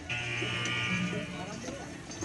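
A high-pitched voice, drawn out for about a second, then quieter background sound.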